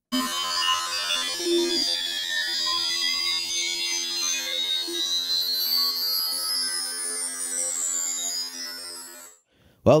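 Logic Pro X Alchemy synthesizer's spectral engine playing an imported PNG image as sound on a held middle C. It is a dense, unpleasant steady drone of many tones, with high glides crossing through it, one rising and one falling. The note stops after about nine seconds.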